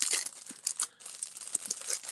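Clear plastic packaging bag crinkling and crackling as it is handled and pulled at, dense at first and then in scattered crackles.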